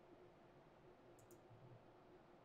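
Near silence: room tone with a faint steady hum, and two faint clicks in quick succession a little over a second in.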